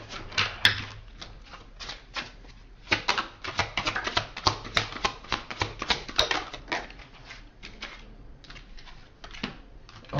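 A deck of tarot cards being shuffled by hand: quick, irregular card clicks, thickest in the middle and thinning toward the end.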